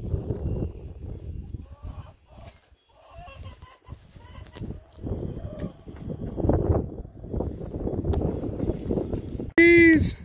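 Wind buffeting the microphone outdoors, an uneven low rumble that rises and falls, with a few faint short calls in the background. Near the end a brief loud call from a voice cuts in.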